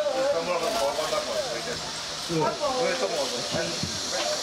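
Voices talking, over a steady high hiss.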